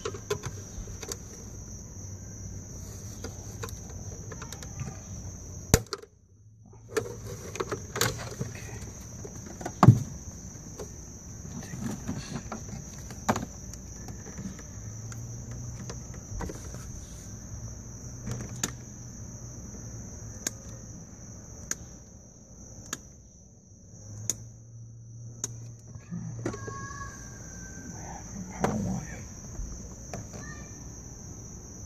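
Small sharp clicks and taps of wires and a plastic wiring connector being handled, over a steady high insect drone, likely crickets. A low hum comes and goes.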